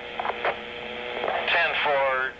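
Recorded police two-way radio: a steady hum on the open channel, then a voice comes over the radio about one and a half seconds in.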